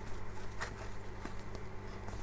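Faint handling sounds of a crochet hook working yarn stitches, with a few light ticks, over a low steady hum.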